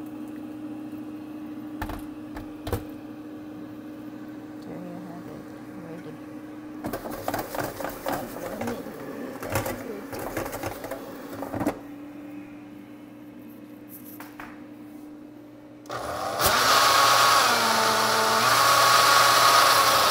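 Personal blender motor running at speed for about four seconds near the end, the loudest sound here, then winding down. Before it, a steady low hum and a few seconds of clattering and knocking.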